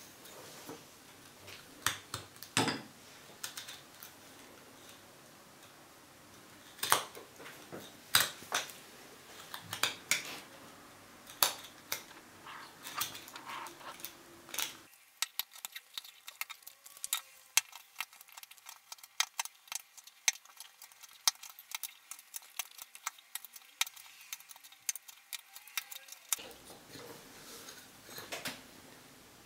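A small carving knife cutting notches into a wooden stick: irregular sharp clicks and short scrapes as the blade snaps out chips of wood. From about halfway the cuts come as a quicker run of small ticks and sound thinner.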